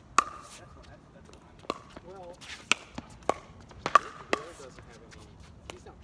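Pickleball rally: sharp pocks of paddles striking the plastic ball and the ball bouncing on the hard court, about six hits at irregular intervals, the loudest just after the start.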